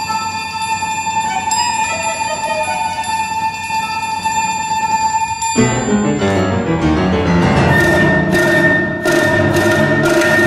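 Live contemporary chamber music for flute, cello, piano and percussion. A long high note is held steady over faint ringing tones, then about five and a half seconds in the ensemble comes in suddenly, louder and busier, with low notes and sharp struck accents.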